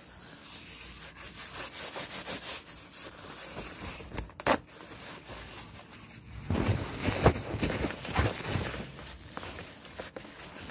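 Rubbing and scratching of an object handled close to the microphone. There is a sharp tap about four and a half seconds in, and stronger rubbing strokes in the second half.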